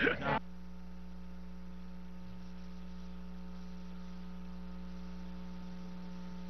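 Steady electrical mains hum, a low buzz with a stack of overtones, running unchanged after a brief snatch of voice that cuts off abruptly in the first half-second.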